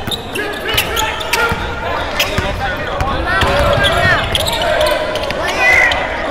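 A basketball bouncing and thudding on a hardwood gym floor during play, a series of irregular sharp impacts, with shouting voices in the echoing gym.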